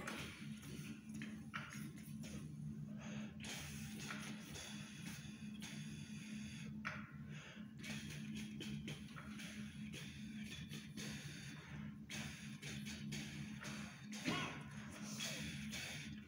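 Brass players blowing air through the phrases of a piece without playing notes: long rushes of breath of about three to four seconds each, broken by short pauses where they breathe at the breath marks. A steady low hum runs underneath.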